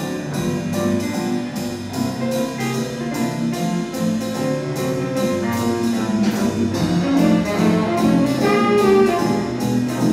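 A student jazz band playing a jazz tune: saxophones and brass over piano, guitar and drums, with cymbal strokes keeping an even beat.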